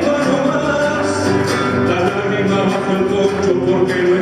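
A man singing a slow Latin American folk song to his own classical guitar accompaniment, performed live.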